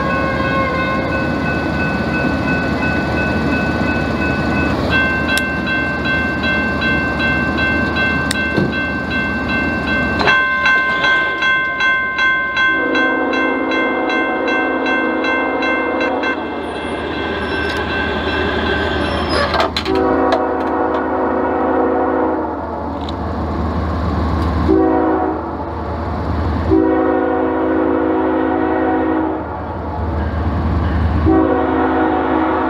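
An approaching freight locomotive's air horn blows the grade-crossing signal: two long blasts, one short and one long, starting about a third of the way in. Before it, a steady high-pitched ringing tone sounds in the background.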